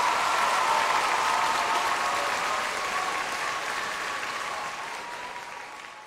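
Hall full of schoolchildren applauding at the end of a presentation, the clapping loudest at first and fading away toward the end.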